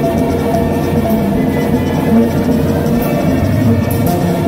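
A Mexican banda playing live, an instrumental passage with no singing: brass over a sousaphone bass line.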